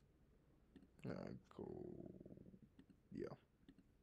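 A few faint computer mouse clicks, scattered between short hesitant words, while a web page is being clicked through.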